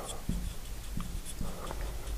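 Marker writing on a glass lightboard: a series of short strokes and light taps as letters are written.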